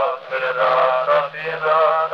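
A wordless Hasidic nigun sung as a melodic chant, played back from a 1912 Edison wax cylinder recording. The sound is thin, with no highs.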